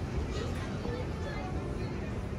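Indistinct voices of people talking some way off, no words clear, over a steady low rumble.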